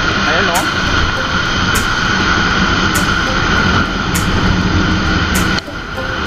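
Steady rush of wind and road noise from a scooter riding on a rain-wet road, with the engine droning underneath. The sound dips briefly near the end.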